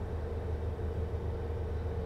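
Steady low hum with a faint hiss inside a car cabin, with a faint steady tone above it: the background drone of the car.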